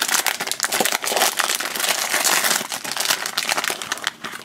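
Foil blind-bag packet crinkling and crackling in the hands as it is pulled open, with a dense run of quick crackles throughout.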